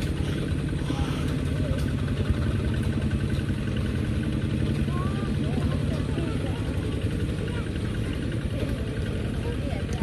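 A small engine running steadily with an even, low hum, and faint distant voices in the middle.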